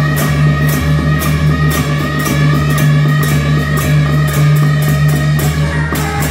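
A beiguan ensemble playing: a loud suona melody over a steady beat of struck cymbals, gong and drum, about three strokes a second.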